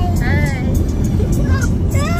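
Steady road and engine rumble inside a moving car's cabin, with short high-pitched vocal phrases over it.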